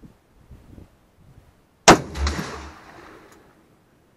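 A single SKS rifle shot about two seconds in: a sharp crack, then a rolling echo that fades over about a second and a half. A few faint knocks come before it.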